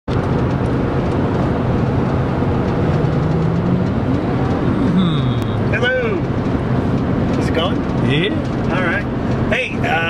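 Steady road and engine noise inside a car cabin moving at highway speed.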